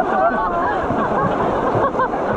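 Indistinct voices of several people chattering over the steady rush of river rapids.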